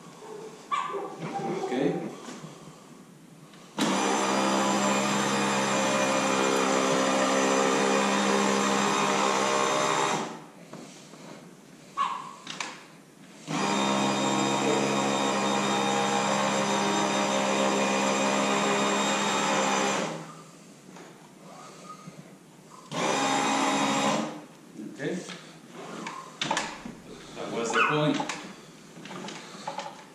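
Escalera electric stair-climbing dolly's motor running as the empty dolly climbs carpeted stairs, in three runs: about six seconds from about four seconds in, about six more from near the middle, and a brief one of about a second later on.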